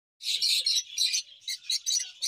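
A flock of lovebirds, mostly lutino peach-faced lovebirds, chattering: many rapid, shrill chirps overlapping, starting a moment in.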